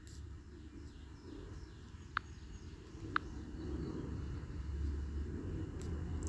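Quiet background noise with a low rumble, broken by two brief, high clicks about a second apart, around two and three seconds in.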